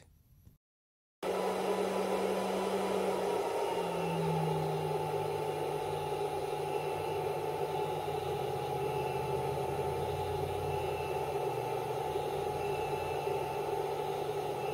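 Battery-powered inverter system delivering about a kilowatt to a load, starting about a second in: a steady electrical hum with fan-like noise. Its pitch drops slightly about four seconds in, then holds.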